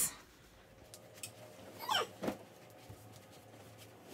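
A single short cry that falls steeply in pitch, about two seconds in, over quiet room tone with a few faint clicks.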